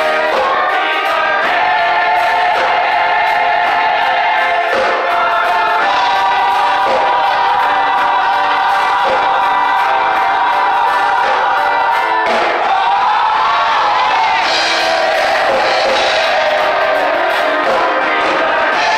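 Gospel choir singing, holding long notes, with a voice sliding up and down about two-thirds of the way through.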